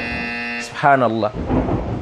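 An edited-in 'wrong answer' buzzer sound effect: a steady, harsh buzz that cuts off abruptly about a third of a second in. It is followed by a brief burst of a man's speech.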